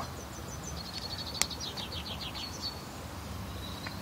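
A bird in the background calling in a rapid trill of short high notes, about eight a second, for roughly two seconds, over steady outdoor background noise. A single sharp click comes about a second and a half in.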